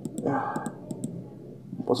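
A few light clicks at a computer, sharp and isolated, with a faint mumble of voice between them. A spoken word begins right at the end.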